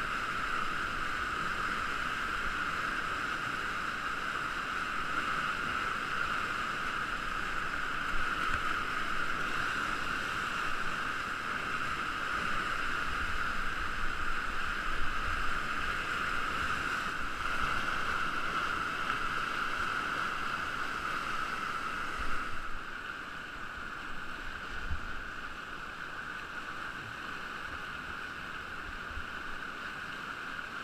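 Steady rushing of churning whitewater on a river standing wave, with occasional low thumps, dropping to a quieter level about two-thirds of the way through.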